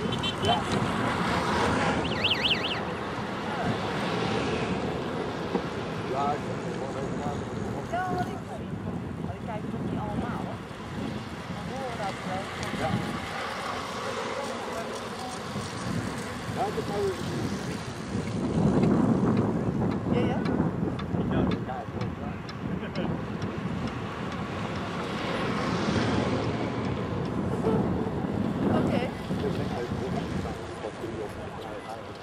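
Wind buffeting the microphone, with indistinct voices talking in the background.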